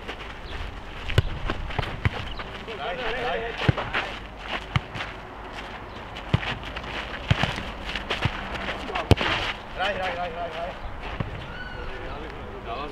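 Futnet ball being kicked and bouncing on an asphalt court: irregular sharp thuds every second or so, the loudest near the end, with players' footsteps scuffing on the surface. Short calls from the players break in twice.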